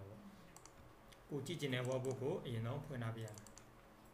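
A few computer mouse clicks while navigating folders: faint single clicks near the start and again near the end. A voice speaks through the middle and is louder than the clicks.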